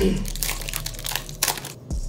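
Foil booster-pack wrapper crinkling and crackling in the hands as the pack is opened and the cards are slid out.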